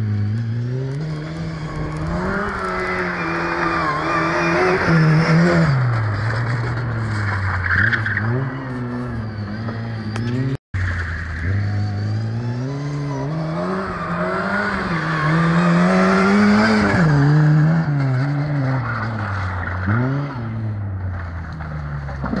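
Lada 2107's four-cylinder engine revving up and down repeatedly as the car is driven hard, with squealing tyres at times. The sound cuts out for an instant about halfway through.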